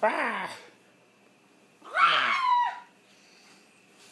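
A toddler squealing twice: a short call falling in pitch at the very start, then a longer, higher squeal about two seconds in.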